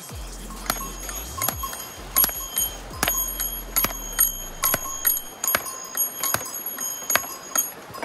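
Steel rock hammer striking stones, a steady series of sharp ringing metallic clinks a little under a second apart, as stones are split open to look for fossils.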